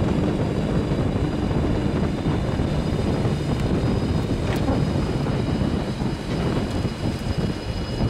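Steady, loud engine noise with a thin high whine over a dense low rush.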